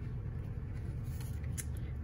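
Light handling of a cardstock piece being slid and placed on a stamping platform, with a few faint taps in the second half, over a steady low hum.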